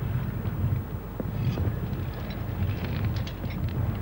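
Wind buffeting the microphone outdoors on an exposed crag, a low irregular rumble that rises and falls.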